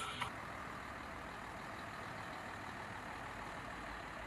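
Steady hum of street traffic and vehicle engines, even and unbroken. A music bed cuts off just after the start.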